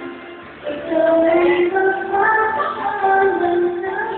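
A man singing a slow ballad into a handheld microphone over backing music. After a short lull, the voice comes back in with a rising note under a second in and carries on with long held notes.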